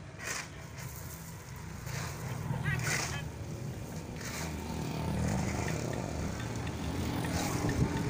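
Shovels scraping and crunching into gravel and sand in short separate strokes, over a steady low rumble of road traffic and faint indistinct voices.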